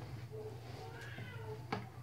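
A faint animal calling a few times in short gliding calls, over a steady low hum, with a single click shortly before the end.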